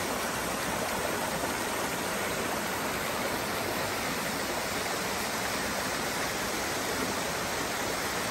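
Rocky mountain stream rushing over small cascades below a waterfall: a steady, even rush of water.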